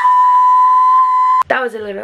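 A loud, steady electronic beep at one high pitch, lasting about a second and a half and cutting off abruptly.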